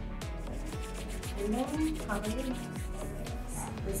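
Two palms rubbing together with a few drops of essential oil, a run of quick back-and-forth strokes, over soft background music.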